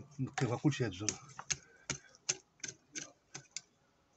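Small hand hoe chopping into garden soil to clear weeds: a run of about eight short, sharp strikes, two or three a second, after a brief bit of talk.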